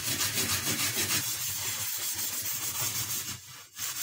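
Scouring pad scrubbing a soapy, grease-crusted metal burner plate of a gas stove in quick back-and-forth strokes, a steady scratchy rubbing that stops abruptly a little over three seconds in.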